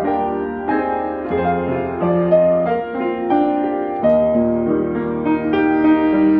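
Yamaha TransAcoustic upright piano played in its normal acoustic mode, its hammers striking real strings: a slow passage of chords over held bass notes, the harmony changing about once a second.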